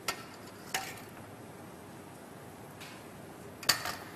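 Spoons clinking against small ceramic soup bowls: a clink at the start, another just under a second in, and a short cluster of clinks near the end.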